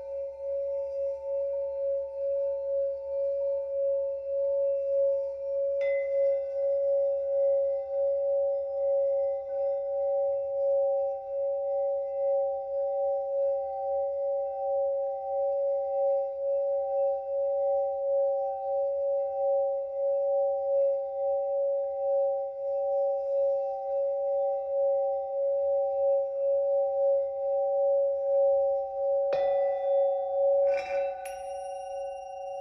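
Antique Himalayan Mani singing bowls being sung with wooden mallets, two bowls sounding held, overlapping tones that waver slowly. About six seconds in a stroke brings in a new upper tone in place of the highest one, and a sharper stroke rings out just before the end.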